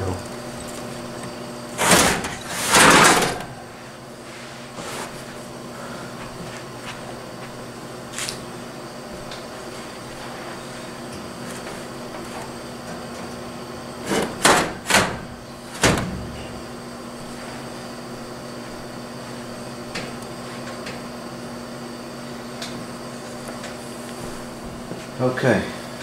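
Frigidaire FHWC253WB2 wall air conditioner's metal chassis being slid out of its steel wall sleeve: a scraping slide about two seconds in, then three sharp knocks and clunks around the middle, with a few faint ticks between.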